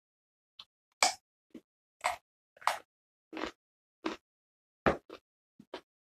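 Raw carrot being bitten and chewed: short, crisp crunches, roughly two a second and unevenly spaced.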